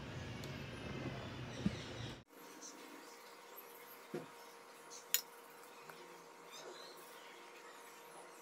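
Faint kitchen handling sounds: a few sharp single clicks and taps as rice dough is pressed flat by hand and a steel spoon scrapes filling in the pan. A low background hum cuts off abruptly about two seconds in, leaving a quieter room.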